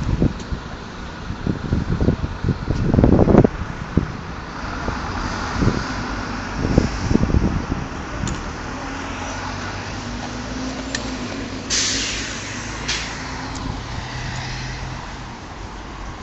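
Single-deck bus's diesel engine idling steadily, with wind buffeting the microphone over the first few seconds. A short hiss of compressed air from the air brakes comes a few seconds before the end.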